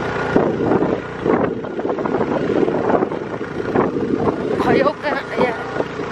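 A motorbike engine running steadily as the bike rides along, with people talking over it.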